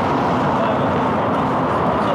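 Steady city street traffic noise, an even rumble with no distinct events.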